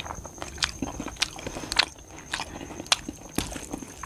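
Close-up eating sounds of a person eating rice and eggplant curry by hand: chewing with irregular sharp clicks.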